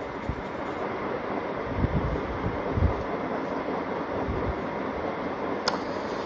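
Steady background hiss and rumble of the voiceover recording, with no voice, broken by a few soft low thumps about two to three seconds in and a sharp click near the end.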